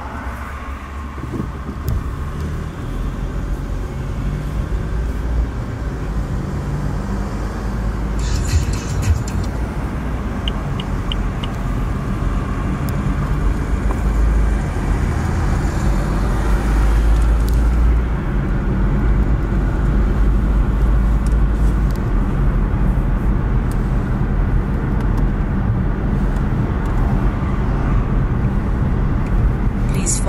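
Car engine and road noise heard from inside the cabin, building as the car pulls away from a stop and gathers speed, then holding steady at cruising speed.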